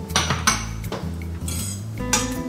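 Metal fork scraping and clinking against an enamel-lined pan as it fluffs cooked couscous, in several quick strokes, the sharpest about half a second in.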